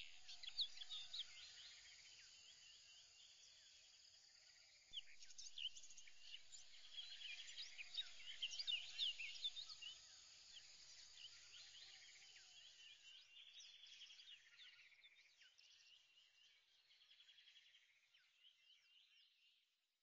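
Faint birds chirping and calling, a dense mix of short high chirps and trills, growing louder about five seconds in and fading away near the end.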